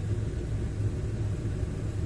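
Low, steady rumble of vehicle engines idling in slow traffic.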